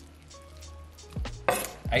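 A chef's knife scraping diced raw chicken thighs off a wooden cutting board into a glass bowl: quiet at first, then a sharp scrape and knock about one and a half seconds in, with another just at the end.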